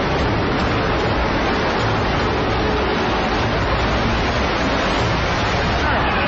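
Loud, steady rushing roar with no separate impacts, the sound of the World Trade Center's South Tower collapsing and its debris cloud sweeping through the streets, as caught on an on-scene camera microphone.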